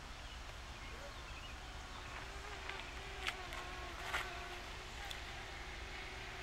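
Quiet outdoor ambience with a faint, slightly wavering buzzing hum, and two short soft clicks about three and four seconds in.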